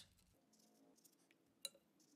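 Near silence with a single short clink about a second and a half in.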